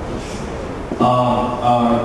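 A man speaking in an even, steady voice into a microphone. The voice is softer through the first second and comes back clearly about a second in.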